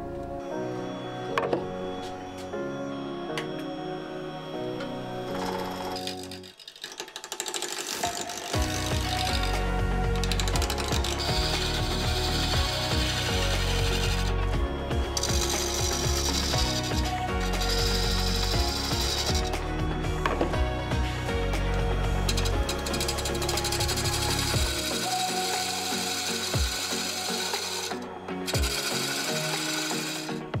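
Background music over the sound of woodturning: a gouge cutting a spinning elm burr and opepe vase blank on a lathe. The music grows louder, with a heavy bass beat, about eight seconds in.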